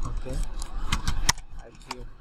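Computer keyboard being typed on: a quick, irregular run of sharp key clicks, thinning out near the end.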